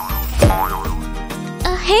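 Background music with a cartoon boing-style sound effect: a quick downward pitch sweep about half a second in, among small wobbling tones.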